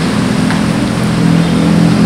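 A motor running steadily with a low hum, and no speech over it.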